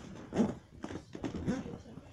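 Indistinct, mumbled speech in two short bits, about half a second in and again about a second and a half in, mixed with a few light knocks and rustles.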